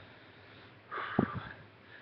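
A short sniff through the nose about a second in, with a soft knock in the middle of it, over quiet room tone.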